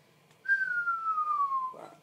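A person whistling one note that slides smoothly downward in pitch. It starts about half a second in and lasts just over a second.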